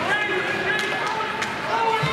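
Ice hockey play in a rink: a couple of sharp knocks of stick and puck over overlapping shouting and chatter from players and spectators.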